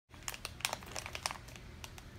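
Blind-bag toy packet crinkling as small hands handle and pull at it: a quick run of irregular crackles that thins out toward the end.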